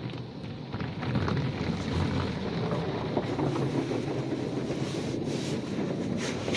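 Mark VII AquaJet XT touchless car wash spraying water and foam onto a car, heard from inside the cabin as a steady, muffled rushing rumble that gets louder about a second in.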